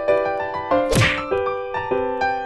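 Piano background music, with one sharp whack about a second in.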